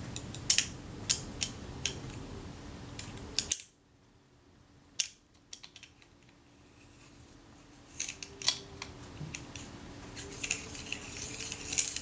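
Scattered small, sharp clicks and ticks of metal lens parts handled by fingers, as a screw-in part of a Schneider Retina-Xenon lens is worked to start its thread. A near-silent gap of about a second comes a third of the way in.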